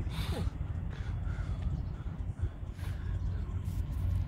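Steady wind rumble on the microphone, with a few short, faint bird calls.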